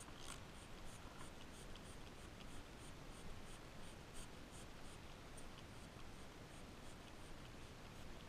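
Faint, irregular scratchy rustling with small ticks, a few a second, from plastic-bag-covered hands handling and rubbing a goat kid's coat.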